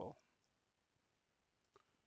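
Near silence: the last of a spoken word at the very start, then room tone with one faint click about three quarters of the way through.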